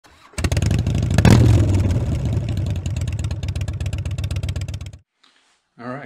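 Motorcycle engine starting with a sharp rev about a second in, then running with rapid, even firing pulses, cut off abruptly about five seconds in.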